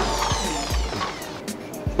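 Corded electric drill released after drilling into an aluminium louvre frame, its motor coasting to a stop: a falling whine that fades out over about a second and a half.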